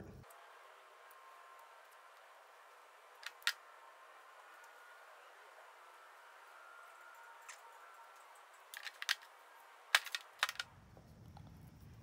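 Handling sounds of black Tesa cloth harness tape being wound around speaker wires: faint rustle with a couple of soft clicks about three and a half seconds in, then a cluster of sharper clicks and taps near the end, the loudest about ten seconds in.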